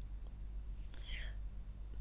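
A pause between spoken sentences: a steady low electrical hum and faint hiss from the recording, with a faint breathy sound about a second in.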